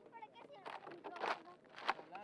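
Distant voices calling out on the pitch, with three short, sharp noisy bursts, the loudest near the end.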